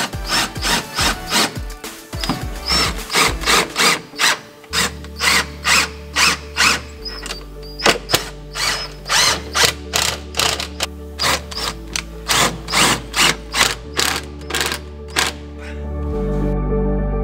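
Makita cordless impact driver driving screws through a metal trim strip into a fibreglass boat hull, heard over background music with a steady beat.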